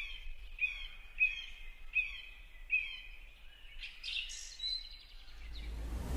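Bird calls: a run of five short, falling chirps about two-thirds of a second apart, then a few higher chirps. They sit over a faint low hum, and a swell of sound rises near the end.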